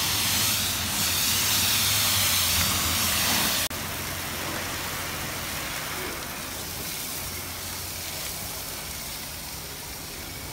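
Pressure-washer wand at a self-serve car wash spraying a pickup truck: a steady hiss of the high-pressure jet with water spattering on the truck's body. The sound breaks off abruptly about a third of the way in and carries on a little quieter.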